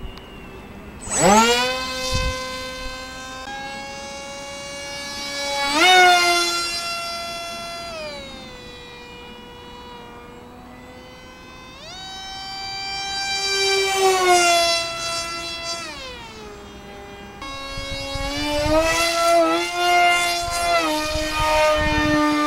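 Small electric foam RC jet model (a 600 mm YF-23) in fast flight, its motor giving a high whine. The whine rises sharply about a second in, then repeatedly climbs and drops in pitch as the model speeds past and away on several passes. Near the end it wavers quickly during a close, busy pass.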